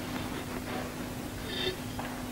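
A quiet pause in a live concert recording: steady background hiss with a faint, constant low hum, and a brief faint sound about a second and a half in.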